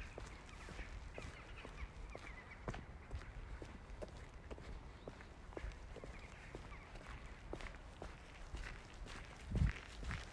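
Footsteps of a person walking on pavement, about two steps a second, over a low steady background rumble. About nine and a half seconds in come loud, low thumps on the microphone.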